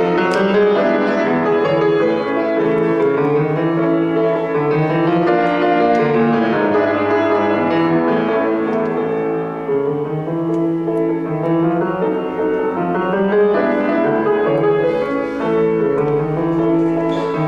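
Grand piano played solo: a Brazilian tango, with many notes struck in a steady flow.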